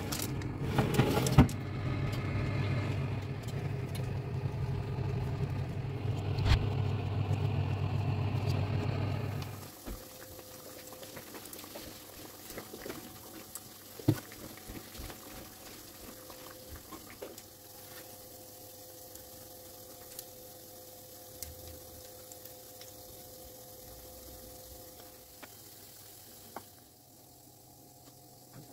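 Oven fan running with a steady low hum and a few sharp knocks of a baking tray against the oven. The hum stops abruptly about ten seconds in, leaving a quiet room with faint clicks and rustles as the baked pastries are handled.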